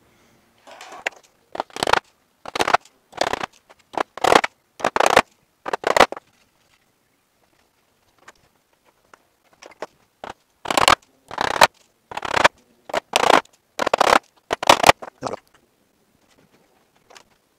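Hand sanding of a wooden hive-roof board with sandpaper: short rasping strokes about one every two-thirds of a second. They come in two runs, about seven strokes and then about nine, with a pause of about four seconds between.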